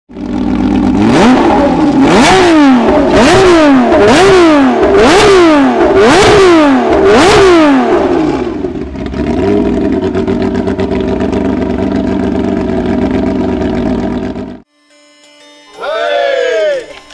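Porsche 911 rally car's flat-six engine revved about seven times in quick succession while stationary, each rev climbing sharply and dropping back, then settling to a steady idle that cuts off suddenly near the end.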